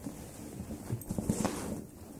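A cat pawing at a cardboard box: a quick run of light taps and scuffs, densest between about one and one and a half seconds in.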